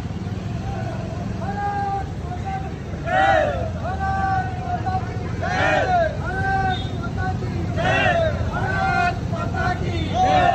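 Men in a moving rally shouting a repeated slogan about every two and a half seconds, over the low steady running of motorcycle engines.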